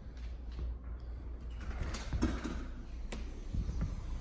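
A house door being opened and passed through, with a sharp latch-like click about three seconds in, over low rumbling handling noise on the microphone.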